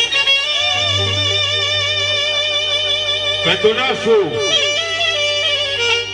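Live wedding band music: a long-held, wavering melody line over a steady low note, with a run of sliding, bending notes about halfway through.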